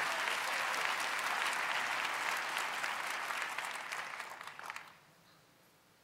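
Audience applauding, steady at first, then dying away and gone about five seconds in.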